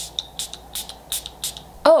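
Catrice freezing setting spray misted from its pump bottle in a rapid series of short hissy spritzes, about three a second.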